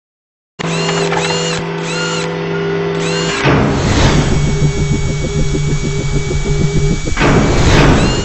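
Produced logo-intro music and sound effects: after a brief silence, a steady drone with a repeating high chirp, then a loud noisy swell about three and a half seconds in that gives way to a fast, drill-like buzzing pulse over a steady low tone, and a second swell near the end.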